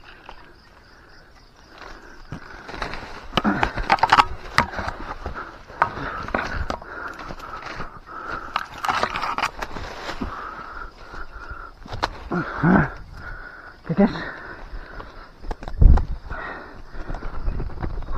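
A person running and pushing through dense forest undergrowth: leaves and branches rustling and snapping, with footfalls and sharp knocks throughout, and short breathy grunts from the runner now and then. A steady insect drone sits underneath.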